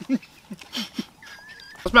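Brief, quiet voice-like murmurs from people eating. Then, near the end, a faint thin high whine lasting about half a second.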